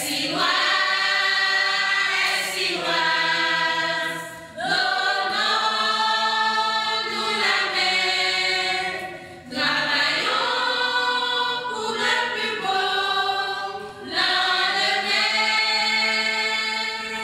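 A choir singing in several-part harmony, in long held phrases that break briefly about every four to five seconds.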